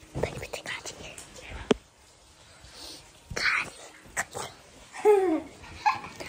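Handling noise from a phone held close and moved about by a child: rustles and clicks, one sharp click about two seconds in. A breathy burst follows, and near the end the girl makes a short voiced sound that dips and rises in pitch.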